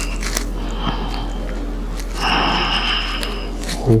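A person breathing out audibly for over a second, about two seconds in, over a steady low electrical hum.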